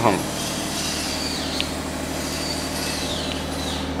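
Steady low mechanical hum with an even hiss, the constant background of a machine running in the workshop; a faint high whistle falls in pitch a few times.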